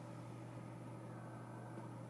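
Quiet room tone: a steady low electrical-type hum with faint hiss, no distinct events.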